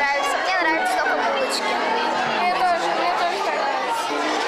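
A girl's voice talking over the chatter of many children in a large room.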